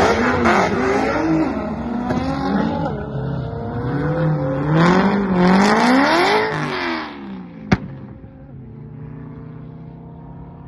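A 2009 Nissan GT-R and a C7 Corvette Z06 accelerating hard down a drag strip. The engine pitch climbs and drops back several times as they shift up through the gears, then fades away after about seven seconds, leaving a faint hum. There is one sharp click near the end.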